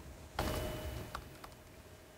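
Laptop keyboard being typed on: a sharp key strike about half a second in that dies away, then a few lighter key clicks.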